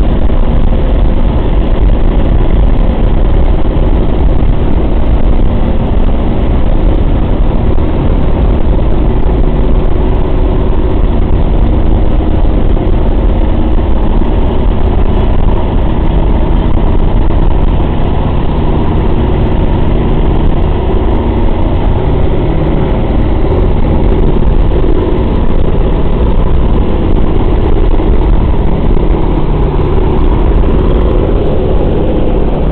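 Four Pratt & Whitney R-1830 radial engines of a B-24 Liberator droning loud and steady in cruising flight, heard from inside the fuselage.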